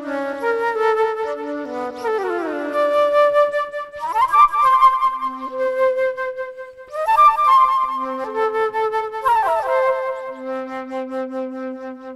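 Solo flute improvising, with quick rising and falling runs between longer held notes.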